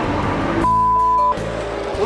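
A single steady, high electronic beep, a censor-style bleep tone, starting just over half a second in and cutting off sharply after about two-thirds of a second, over background music.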